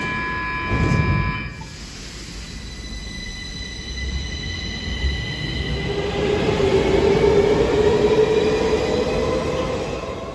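A Stockholm metro C20 train leaving the platform. It opens with a steady multi-tone door-closing signal and a thud of the doors shutting about a second in. Then the traction motors whine, rising slowly in pitch and getting louder as the train speeds away.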